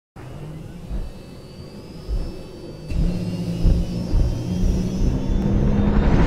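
Cinematic intro sound design: a low, engine-like rumbling drone punctuated by deep booming hits about a second apart, with a faint high whine slowly rising above it as the whole build grows louder toward the end.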